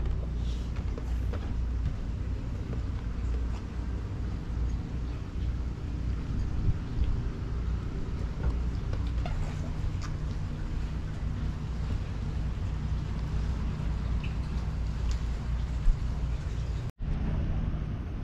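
Steady low rumble of wind buffeting the microphone, with a few faint clicks. The sound cuts out briefly near the end.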